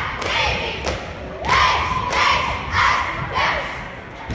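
Cheerleading squad shouting a cheer in unison, short rhythmic calls with thuds on the beat.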